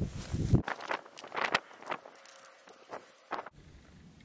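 Rustling and handling noise as the camera is moved under camouflage netting: a low rumble of wind or handling on the microphone at first, then a series of short scrapes and rustles that stop abruptly near the end.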